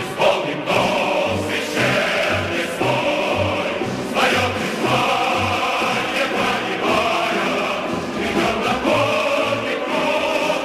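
A Soviet patriotic song: a choir singing over an orchestra, with a bass line stepping about two notes a second.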